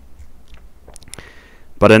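A pause between a man's spoken sentences, filled with a few faint clicks and a short intake of breath; his voice starts again near the end.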